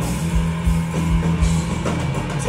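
A rock band playing live, with electric guitars over a held bass note and a drum kit keeping a steady beat of about two hits a second.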